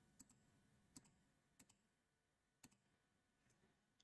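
Four faint computer mouse clicks, spread irregularly about a second apart, over near silence.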